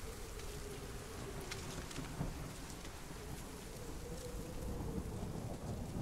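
Film-soundtrack rain ambience: steady rain with a low rumble of thunder and scattered faint drips, under a faint held tone.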